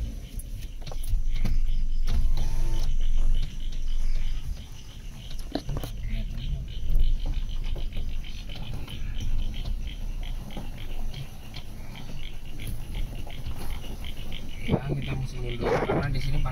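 Car engine running at low speed as the car is reversed and manoeuvred into a parking spot, heard from inside the cabin as a steady low rumble, with a louder stretch early on. Insects trill faintly outside.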